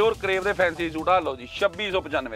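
A person's voice talking; the recogniser wrote no words here.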